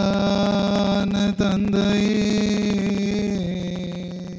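A priest's voice chanting a prayer on one long held note at a nearly level pitch, with a brief break about a second and a half in and a slow fade near the end.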